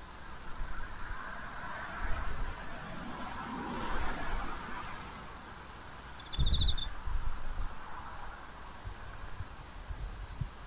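Insect chirping in short trains of rapid pulses that repeat every second or so, over a steady hiss. A low thump comes about six and a half seconds in.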